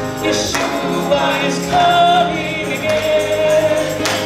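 A group singing a gospel hymn together over musical accompaniment, with long held sung notes and some percussion.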